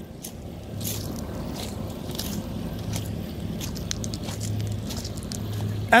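Neoplan N122/3 Skyliner double-deck coach's diesel engine idling steadily with a low hum, with a few crunching footsteps on gravel.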